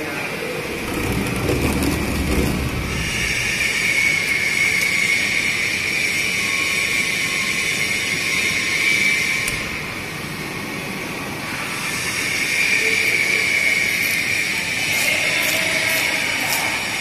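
BOPP tape slitting and rewinding machine running, a steady high whirring hiss that swells and eases, dipping for a couple of seconds about ten seconds in.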